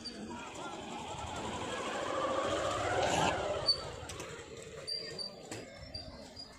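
Distant outdoor voices of people talking and calling, swelling to their loudest about three seconds in and then fading, with a few short high bird chirps.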